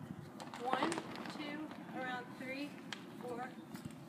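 Quiet talking in a woman's voice, the words indistinct, with a few faint clicks.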